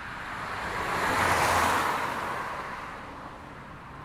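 A rushing whoosh of noise that swells up, peaks about a second and a half in, and fades away over about three seconds.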